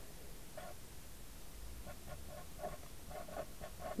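Green Crayola felt-tip marker squeaking faintly on paper in a run of short, irregular strokes as words are written.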